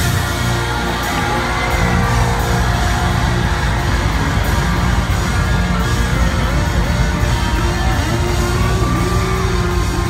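Live funk band playing loudly, with a heavy bass and drum groove under sliding pitched lines.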